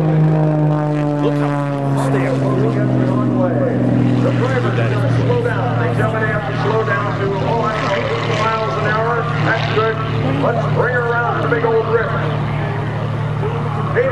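Propeller aircraft engines: a steady low drone from a radial-engine plane throughout, with a higher engine note falling in pitch over the first few seconds as it passes by. From about five seconds in, voices talk over the engine drone.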